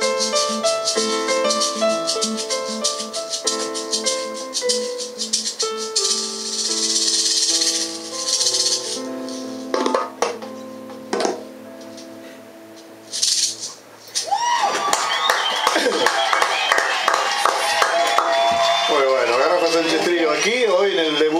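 A small live band of electric bass, keyboard, guitar and hand percussion with a rattling shaker plays the closing bars of a funk-jazz tune. The tune ends about eight seconds in, followed by a few last hits and ringing notes. From about halfway on, lively voices take over the room.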